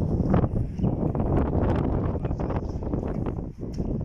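Wind buffeting the phone's microphone: a steady low rumble with scattered short crackles.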